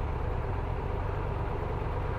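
Triumph Tiger 1200 Rally Pro's three-cylinder engine idling steadily at a standstill.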